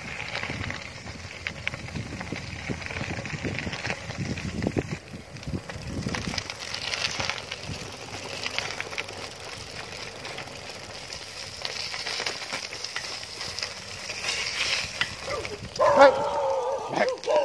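Bicycle tyres rolling over loose gravel: a continuous crunching crackle with many small ticks of stones. A low rumble underneath stops about six seconds in.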